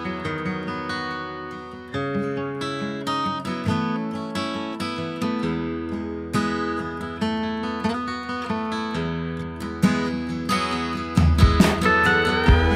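Steel-string acoustic guitar playing the intro of a country-rock song, chords picked and strummed at an easy pace. About a second before the end, upright bass and pedal steel guitar come in, the steel with gliding notes.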